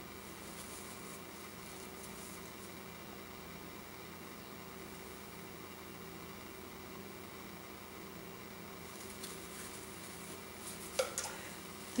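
Quiet room tone: a steady low hum with a few faint overtones. Near the end come a few faint scrapes and a short click.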